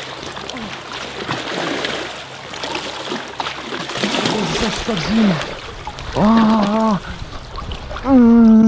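Sea water splashing and sloshing around a swimmer close to the microphone, followed by short wordless vocal noises from the swimmer in the very cold water and then a held one-note cry of about a second, the loudest sound, near the end.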